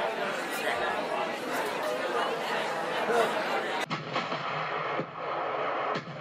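Many voices talking over one another in a dense jumble of overlapping speech, cut off abruptly about four seconds in and replaced by a duller, different sound.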